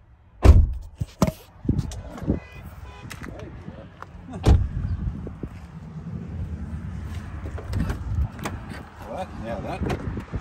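A series of thumps and knocks from a car's doors and body panels being handled, the loudest about half a second in and another about four and a half seconds in, followed by a low rumble.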